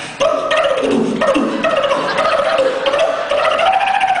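Vocal percussion (beatboxing) into a microphone: a held tone that slowly wavers up and down in pitch, with quick clicks ticking over it at about five or six a second.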